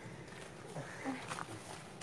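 Faint footsteps and rustling of several people walking up a dirt forest trail, with a few soft crunches in the middle.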